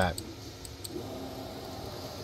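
Creality Ender 3 V3 SE 3D printer's stepper motors driving the bed during its auto Z-offset routine: a few light clicks, then a faint steady motor hum from about halfway in.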